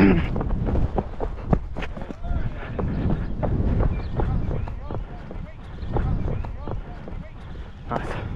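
Wind buffeting a helmet-mounted action camera's microphone as a steady, uneven low rumble, with faint indistinct voices and a few sharp clicks.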